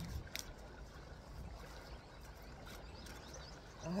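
Quiet outdoor ambience: a low, steady rumble under a faint hiss, with one short click about a third of a second in.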